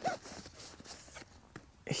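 Faint handling sounds from a hiking backpack: fabric rustling and small ticks as a small item is taken out of it, after a short vocal sound at the start.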